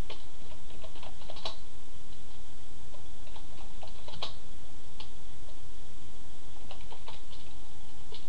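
Computer keyboard being typed on, keystrokes coming in short bursts with pauses between them, over a steady low hum.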